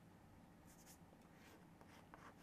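Chalk writing on a chalkboard: a few faint, short scratching strokes as letters are drawn.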